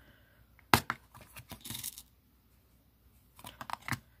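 A sharp click about three quarters of a second in, then rustling and light clicks as small metal jump rings are taken out of a plastic packet and set out on the cloth-covered work surface. A few more light clicks come near the end.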